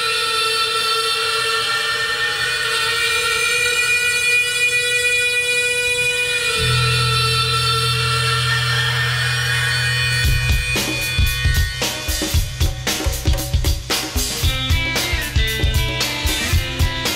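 Live band music: held sustained chords open the passage, a low bass note comes in about six and a half seconds in, and the drums kick in with a steady beat about ten seconds in.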